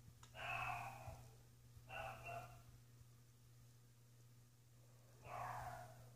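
A dog barking three times, twice close together near the start and once more near the end, over a steady low hum.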